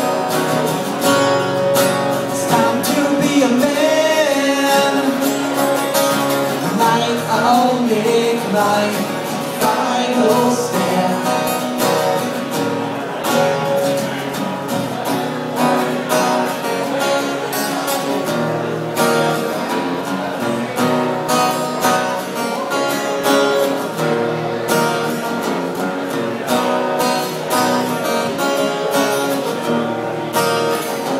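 Two acoustic guitars playing together live, strummed and picked, with singing over them in places, mostly in the first third. This is the instrumental stretch toward the end of an original acoustic song.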